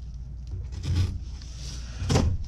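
A folding knife blade drawn along the packing tape of a cardboard box, slitting it open, with a short scrape about a second in.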